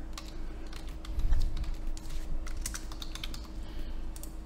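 Computer keyboard typing: an irregular run of quick key clicks.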